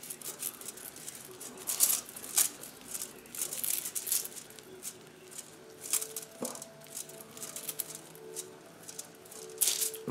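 Brown acrylic paint being thinned with a little water and worked on a plastic palette sheet: irregular short scratches, taps and scrapes, busiest in the first few seconds and sparser after.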